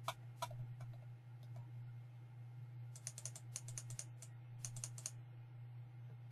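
Faint computer keyboard typing: a few scattered keystrokes in the first second, then three quick bursts of keys in the second half, over a steady low hum.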